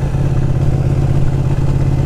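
Ducati 1299 Panigale's Superquadro L-twin engine running steadily while cruising at a constant speed, its pitch holding level with no revving or gear change.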